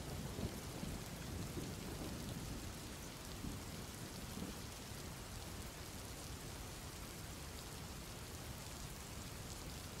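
Faint, steady rain falling, an even patter with no break, laid under the narration as a background bed.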